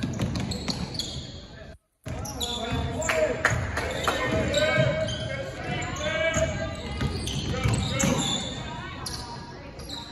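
A basketball bouncing on a hardwood gym floor during play, with voices from the court and stands echoing in the hall. All sound drops out briefly just before two seconds in.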